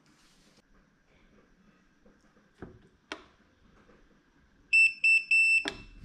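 Cuta-Copter Trident 5000 fishing drone's electronics powering up as the power plug goes in: two faint clicks, then three high electronic beeps, the last one longer, ending in a sharp click.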